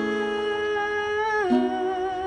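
A man singing one long held note over ringing acoustic guitar chords, with a new chord struck about one and a half seconds in as the note dips slightly.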